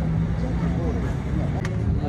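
Outdoor city street ambience: a steady low rumble and hum of vehicle traffic with people's voices mixed in.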